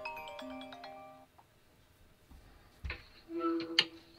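iPhone FaceTime outgoing call tone: a chiming melody of short, bell-like notes that stops about a second in as the call connects. A short click follows, and a brief voice comes in near the end.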